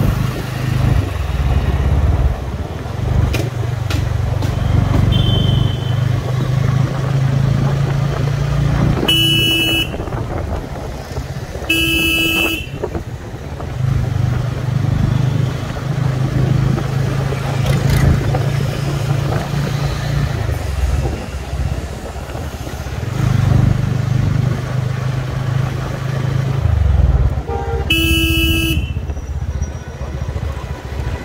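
Motorcycle engine running while riding through street traffic, its steady low note dropping away and returning several times. A vehicle horn beeps three times: twice in quick succession about a third of the way in, and once near the end.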